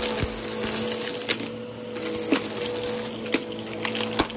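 Bissell upright vacuum running with a steady hum while it sucks up crunchy debris from carpet, with a few sharp clicks and crackles as pieces rattle up into the machine.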